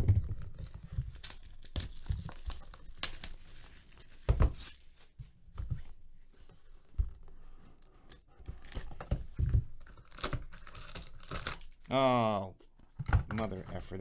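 Cardboard packaging being handled: a sharp knock at the start, then scattered taps, scrapes and rubs as a cardboard sleeve is slid off a Panini Impeccable card box and its lid lifted, with some tearing and crinkling of the wrapping.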